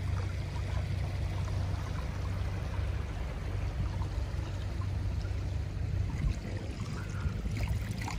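Pool water sloshing and lapping close to the microphone as a person wades through a swimming pool: a steady watery rush with a low rumble underneath.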